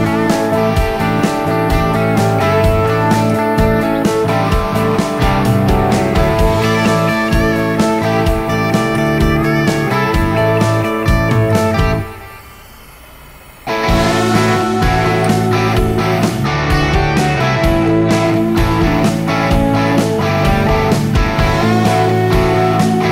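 Background music with guitar and a steady beat, dropping out for about a second and a half just past the halfway point.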